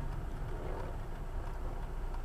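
Car engine and drivetrain heard from inside the cabin, a steady low rumble as the car moves off from a stop sign into a turn.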